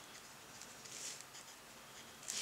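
Faint, light scratching of a fine watercolor brush tip dabbing on paper: a few soft touches, the longest about a second in.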